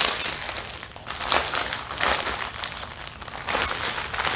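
Clear plastic packaging around a roll of diamond painting drill bags crinkling irregularly as it is handled and pulled at.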